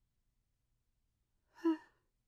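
Near silence, then near the end a woman's single short, soft "huh".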